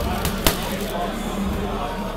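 A single boxing-glove punch landing on a heavy punching bag about half a second in, a sharp smack over people talking in the background.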